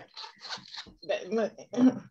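Women's voices: laughter and soft, broken talk over a video call.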